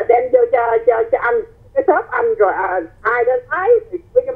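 Speech only: a voice talking over a telephone line, thin and narrow-sounding.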